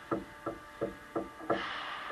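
A hockey stick knocking five times in a steady rhythm, about three knocks a second, close to the net-mounted microphone. From about a second and a half in, a steady scraping hiss follows.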